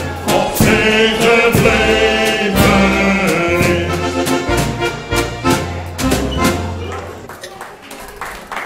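Live sing-along music: a voice singing over an accordion with a MIDI-driven bass and steady percussion beat, fading out over the last two seconds.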